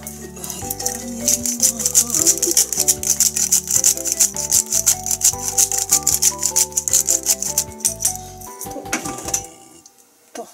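Salt-and-pepper shaker bottle shaken rapidly over raw chicken pieces: a fast, high rattle of the grains lasting about seven seconds, heard over background music.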